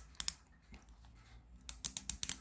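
Small plastic clicks from a toy car's friction-motor slip clutch: the spring-loaded toothed arms on the flywheel shaft ratchet over an inside-toothed gear as the wheel is forced round, the clutch slipping to protect the gear teeth. A few clicks at the start, a short pause, then a quick run of clicks near the end.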